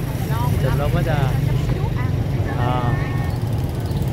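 Busy street-market ambience: several short voice calls and snatches of talk over a steady low rumble of passing motorbike traffic.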